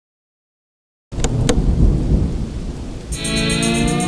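Silence, then about a second in a sudden loud, deep rumbling noise with two sharp cracks near its start. About three seconds in, music begins with sustained pitched chords over the rumble.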